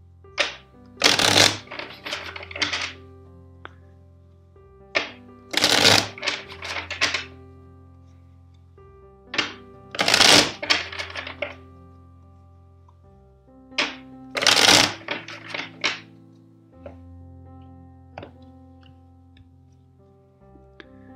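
A tarot deck shuffled by hand four times, each round a crackling burst of cards lasting two to three seconds, over soft background music with long held notes.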